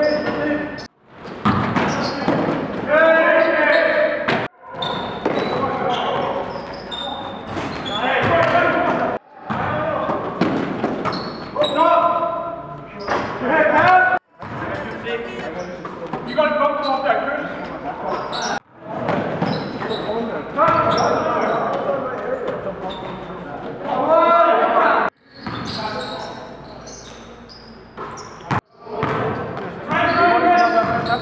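Live game sound from a basketball game in an echoing gym: a basketball bouncing on the hardwood floor amid players' shouted voices. The sound breaks off suddenly about seven times where the footage is cut from play to play.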